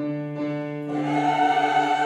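A soprano singing a classical vocal line with grand piano accompaniment, coming in strongly about a second in with a wide vibrato over a held lower note.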